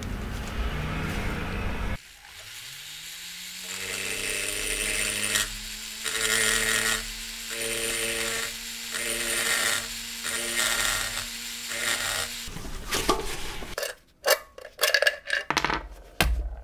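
A flexible-shaft rotary tool spins up with a rising whine about two seconds in, then runs at steady speed while its carbide burr grinds in repeated bursts against the cast metal. The motor cuts off suddenly near the end, followed by a quick run of sharp metallic clicks and knocks.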